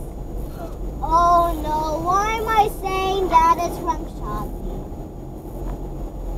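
A child singing a few held, gliding notes without clear words, from about a second in until about four seconds in. A steady low rumble of car cabin noise runs underneath.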